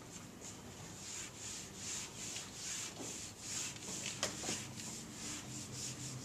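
A whiteboard eraser wiping across a whiteboard in quick back-and-forth strokes, a soft repeating swish about three times a second.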